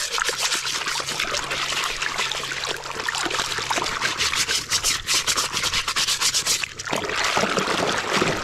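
A stiff plastic scrub brush scrubbing a plastic toy ambulance in a tub of muddy water, in fast rasping back-and-forth strokes, with the water sloshing and splashing, heaviest near the end.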